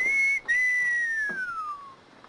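A man whistling at a woman in admiration: a short high note, a brief break, then a long note sliding steadily downward.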